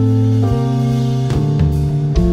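Live rock band playing an instrumental passage: electric guitars and bass holding notes that change about every half second, over a drum kit.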